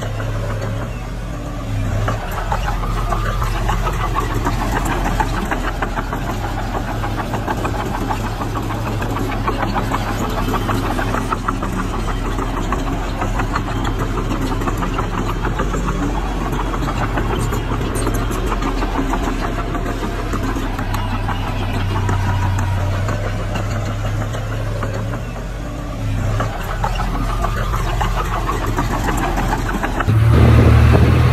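Small crawler bulldozer's diesel engine running steadily under load as it pushes loose soil with its blade. The engine note dips briefly about two seconds in and again near the end.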